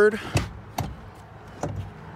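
Third-row seat of a 2019 Honda Pilot being folded forward after its release strap is pulled: a sharp latch knock just after the start, then two lighter clicks from the seat mechanism.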